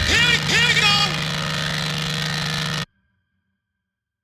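Closing bars of a 148 BPM hardcore techno track: swooping, pitch-bending synth sounds over a sustained low tone, then the music cuts off suddenly about three seconds in.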